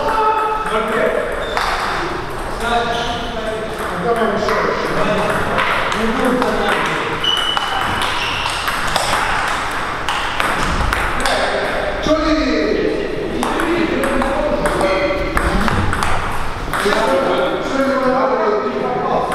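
Table tennis balls clicking irregularly on bats and tables throughout, over people talking.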